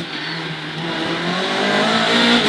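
Renault Clio Williams rally car's 2.0-litre 16-valve four-cylinder engine, heard from inside the cabin. Its note holds steady, then climbs in pitch and loudness from about a second in as the revs rise.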